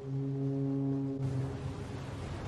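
A deep, steady horn-like tone, one long sustained note with overtones, opening an advertisement soundtrack. It fades about a second and a half in while a low rumble continues beneath.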